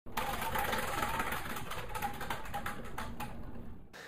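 A hand-spun prize wheel clicking rapidly as the pins on its rim pass the pointer. The clicks slow near the end and stop just before four seconds.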